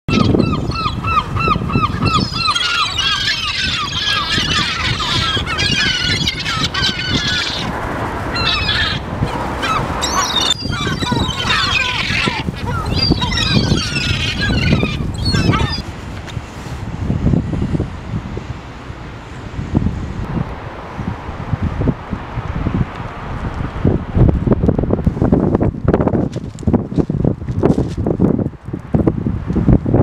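Many gulls calling at once, a dense chorus of overlapping cries for roughly the first half, then dying away. What is left is a low rumbling noise with irregular thumps, louder again near the end.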